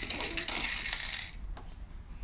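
Small plastic beads rattling inside the clear spinning dome of a baby's activity-centre toy as it is turned by hand: a fast run of clicks that fades out about a second and a half in.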